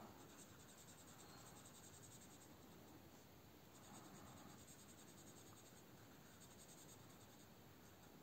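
Faint scratching of a felt-tip marker colouring in small boxes on a paper savings tracker.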